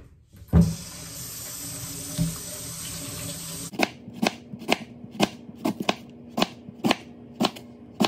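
Kitchen tap running into a stainless-steel sink after a single thump, then cutting off a little past halfway. A chef's knife then slices leeks into rounds on a cutting board, each cut ending in a sharp click on the board, about two a second.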